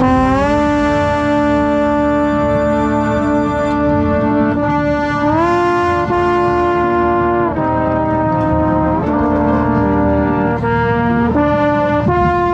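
A marching trombone played close to the microphone, holding long loud notes. The pitch steps up about five seconds in, then the notes change more often near the end.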